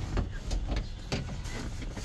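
Scattered clicks, knocks and rattles from hands prying and tugging at the inside door panel of a vehicle, over a steady low rumble.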